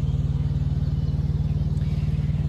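A semi truck's auxiliary power unit (APU), a small diesel engine, running steadily with a low, even drone.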